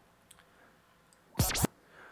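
Near silence, then about a second and a half in a short record scratch: a track played from a Serato control vinyl on a turntable, pushed back and forth by hand in two quick strokes.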